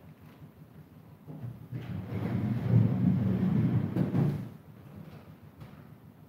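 A person rummaging for something, a rustling, scraping noise that builds over about a second from a quarter of the way in, holds for about two seconds and stops fairly suddenly.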